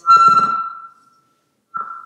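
Public-address microphone feedback: a loud, high, steady squeal starts suddenly with a low rumble under it and dies away within about a second, then returns briefly near the end. It is a fault in the room's sound system.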